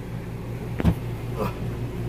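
Steady low hum with a single sharp thump just under a second in and a softer knock about half a second later.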